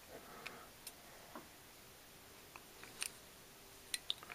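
Faint, scattered small clicks and scrapes as a capacitor is pushed into a hole in a 3D-printed plastic block, its lead wire being threaded through; the clearest click comes about three seconds in.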